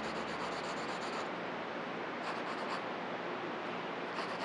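Graphite pencil shading on sketchbook paper: a continuous scratchy rubbing, with runs of quick, even back-and-forth strokes in the first second and again briefly around the middle.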